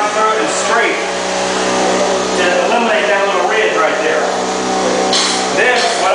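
A voice talking, at speech level, with no clear words, and a short high scraping hiss about five seconds in.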